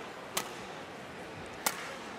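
Two sharp badminton racket-on-shuttlecock hits about 1.3 seconds apart, over the steady hiss of a large arena.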